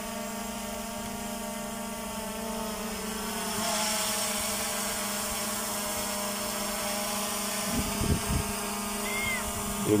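DJI Mavic Air 2 drone hovering a few metres overhead, its propellers giving a steady hum of several fixed tones. A rush of hiss swells in about three and a half seconds in.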